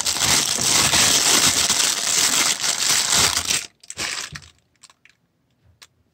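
Clear plastic bag crinkling steadily as it is handled and pulled off a camera lens, for about three and a half seconds. A few light handling clicks follow.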